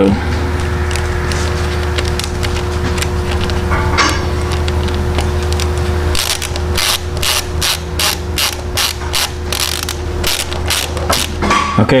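Ratcheting screwdriver clicking at about four clicks a second as it drives a stainless exhaust stud into a cast-iron diesel cylinder head. The stud is run in until it reaches a chisel-mangled thread that sets its depth. A steady hum runs under the first half.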